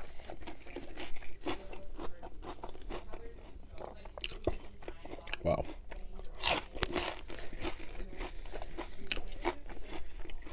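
Close-miked crunching and chewing of a crisp battered, deep-fried onion ring, with the loudest crisp bites about five and a half to seven seconds in.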